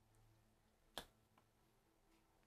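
Near silence with one sharp click about a second in, from a toddler handling a small cardboard board book.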